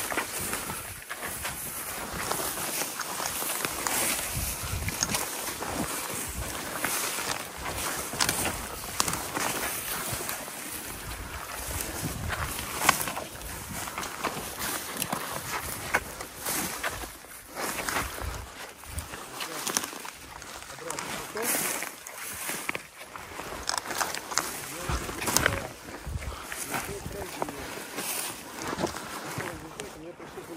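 Walking through dense brush: boots tramping through dry low shrubs while spruce branches scrape and swish against clothing and the camera, with irregular twig crackles throughout.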